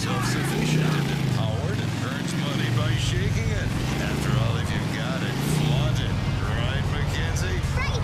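Video-game motorcycle engine running as the bike is ridden, its pitch rising and falling with each surge of throttle, about four times. Indistinct voices sound over it.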